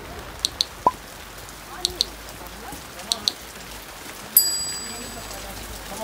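Steady rain falling. Over it come three pairs of sharp mouse-click sound effects and then a bright bell chime a little past four seconds in, the loudest sound, ringing out for about a second: the effects of a subscribe-button animation.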